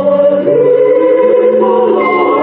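Choir singing slow, long-held chords, the harmony shifting about half a second in.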